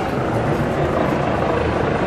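Steady low rumble of a busy city street: traffic and a crowd of pedestrians.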